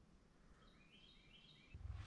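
Near silence, with a faint bird call: a quick series of a few short high chirps in the middle.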